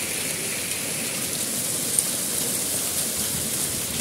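Heavy rain mixed with hail pouring down onto open muddy ground, a steady dense hiss. One sharp tick stands out about halfway through.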